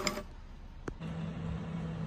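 A single sharp click about a second in, then a steady low mechanical hum starts and holds at an even pitch.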